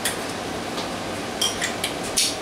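Small metal saw arbor collars being handled, giving a few light clinks, most of them in a quick cluster about a second and a half in.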